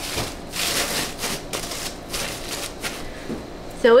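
Crinkle-cut paper shred rustling and crackling as handfuls of it are pushed down into a cardboard shipping box.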